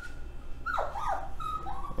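A pet dog whining: several short, high, thin whines, the longest dipping in pitch and rising again about a second in.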